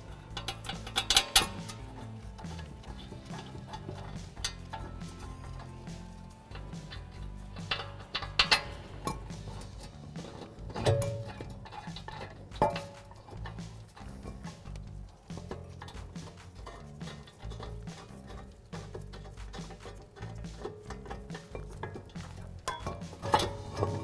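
Background music, with scattered metallic clinks and knocks as the caliper bracket bolts are fitted behind the brake rotor.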